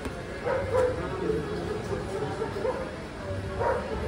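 A dog whining and yipping in a series of short, high cries.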